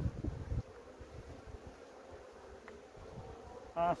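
Honeybees from an open, well-populated hive humming steadily. In the first half-second there are a few low thumps and rustles as gloved hands handle the frames.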